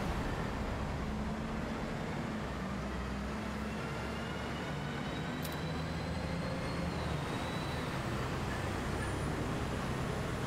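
Steady city traffic noise: the low rumble of passing buses and cars, with a faint whine that climbs slowly in pitch over several seconds.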